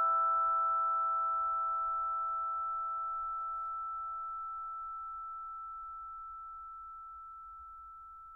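The last chord of the background music ringing out and fading slowly: several bell-like notes die away, the highest one lingering longest.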